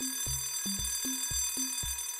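An alarm-clock bell sound effect rings steadily as the time's-up signal at the end of the quiz countdown. Background music with a low bass note about every half second plays under it.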